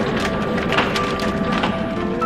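Outro logo music with sustained synth tones, cut by several sharp knocks from the animation's sound effects as the cubes tumble into place.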